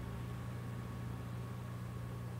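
Room tone: a steady low electrical or fan-like hum with faint hiss, unchanging throughout.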